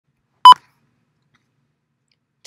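A single short, sharp electronic beep about half a second in.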